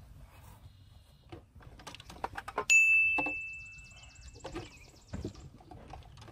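A few light knocks, then a single sharp metallic ding about three seconds in, ringing on one clear tone that fades away over about two seconds.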